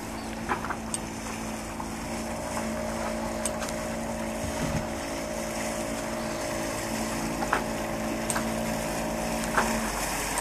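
Small outboard motor on an inflatable dinghy running at a steady pitch, growing gradually louder as the dinghy comes closer.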